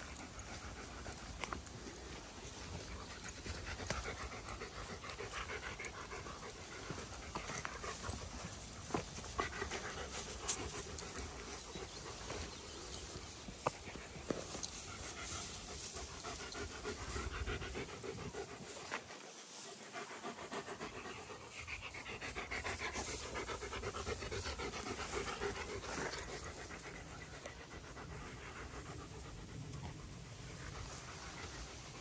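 A German Shepherd-type dog panting steadily and rhythmically, with scattered small clicks and rustles.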